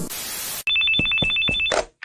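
Television static hiss for about half a second, then a telephone ringing in a fast, even trill of two high tones for about a second before it stops.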